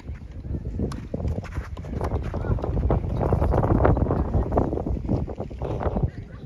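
Tennis doubles rally: repeated sharp racket-on-ball strikes over a heavy low rumble of wind buffeting the microphone.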